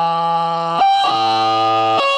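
A man singing long held notes into a microphone, dropping to a clearly lower note about a second in.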